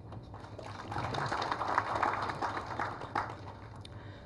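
Audience applause, building about a second in and dying away near the end, fairly faint under the hall's room tone.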